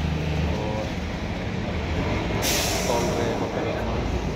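A steady low engine rumble, with a sudden hiss starting about two and a half seconds in and lasting over a second.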